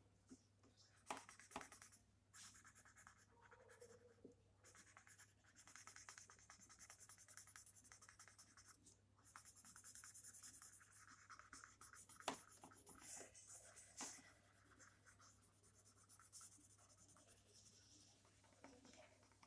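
Graphite pencil shading on sketchbook paper: faint, uneven scratching strokes, with a few sharper ticks.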